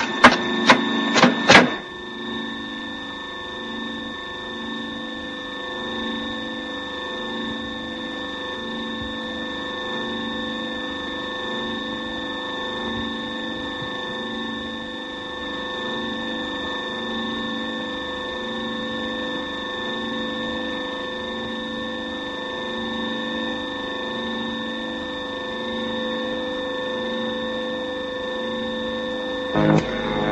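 Several sharp metallic clanks over the first two seconds, then a steady mechanical drone of factory machinery: a few constant humming tones over a low, regularly repeating pulse.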